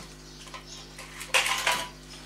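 A brief metallic clatter about a second and a half in, from tools being handled on a metal workbench.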